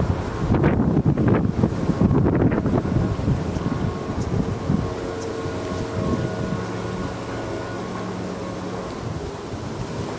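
Wind buffeting the camera's microphone: gusty rumbling for the first few seconds, settling into a steadier rush after about five seconds, with a faint steady hum underneath.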